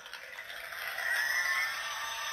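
A toy iCarly remote playing a sound effect from its small built-in speaker after a button press; the sound is thin, with no low end, and runs steadily on.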